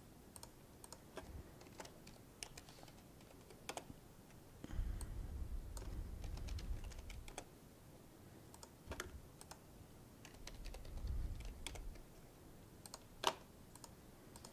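Typing on a computer keyboard: irregular key clicks throughout, with one sharper, louder key strike near the end. Two short spells of low rumble come in the middle.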